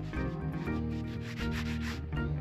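A cloth rubbing back and forth on a yoga mat in quick wiping strokes, over background music with held notes.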